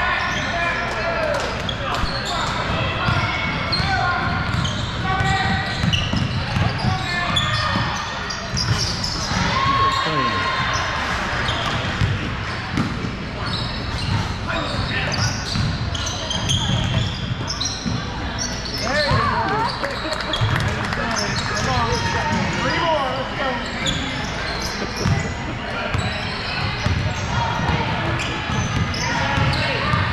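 Basketballs bouncing on a hardwood gym floor amid many overlapping, indistinct voices of players and spectators, throughout a large indoor gymnasium.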